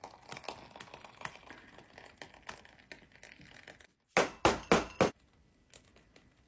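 A plastic piping bag squeezed to pipe thick whipped cream into a glass jar: soft crackling of the bag and squish of the cream. After a brief break about four seconds in come four loud, short sounds in quick succession, about a quarter second apart.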